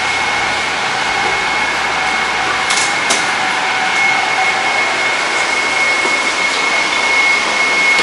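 AirTrain JFK car running, heard from inside the cabin as it nears a station: a steady rushing noise with a constant high whine, and two faint ticks about three seconds in.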